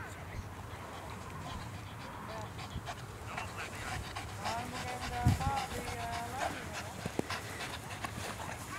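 German Shepherd dog whining in short high squeaks that rise and fall, with a few briefly held whines. There is a single low thump a little past halfway.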